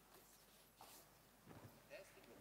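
Near silence: room tone with a few faint, scattered knocks.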